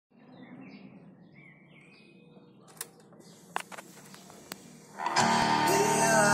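Faint bird chirps, then a few sharp clicks, then about five seconds in music starts loudly from the Sanyo M-7300L boombox as it plays a cassette tape.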